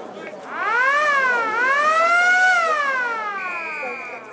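Football ground siren sounding: one long wail that rises, dips briefly, rises again and then slowly falls away, most likely signalling the end of a quarter. A short high steady tone sounds over it near the end.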